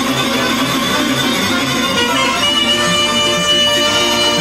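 Live Romanian Banat folk dance music led by a saxophone over a band with a pulsing bass; about halfway through the lead holds one long high note.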